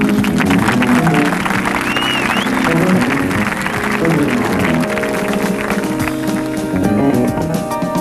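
Live jazz ensemble playing: held chords over busy drum kit and percussion strokes, with a brief high gliding tone about two seconds in.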